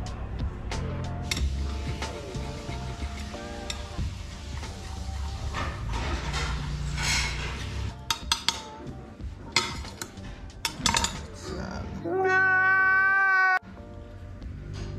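Background music with changing steady notes. Sharp clicks come through in its second half, and near the end there is a loud, high-pitched held tone that stops abruptly.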